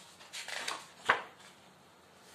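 Paper rustling as a picture book's pages are handled and turned, then one sharp knock a little after a second in.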